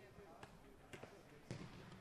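Near silence with a few faint knocks, about half a second apart.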